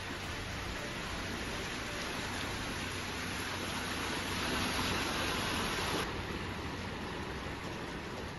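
Heavy rain and running floodwater: a steady rushing hiss with no rhythm or tone in it.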